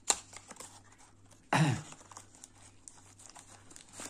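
Cardboard knife box being opened by hand: a sharp click as the tucked end flap comes free, then light rustling and scraping of the cardboard and paper inside, with one louder brief burst about a second and a half in.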